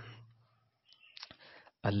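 A man speaking in Urdu: the tail of one phrase, a short pause holding a few faint clicks, then he starts speaking again near the end.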